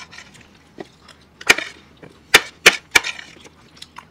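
Close-miked eating sounds: sharp clicks and smacks of spoon, fork and mouths, one about a second and a half in and three close together a second later.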